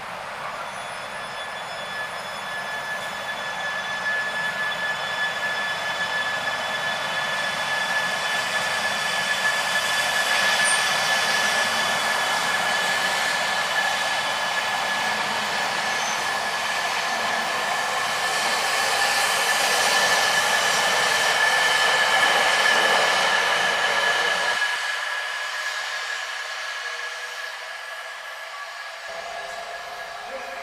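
A train running past, with a steady high whine over running noise that builds up and then fades away. The low end drops out abruptly near the end.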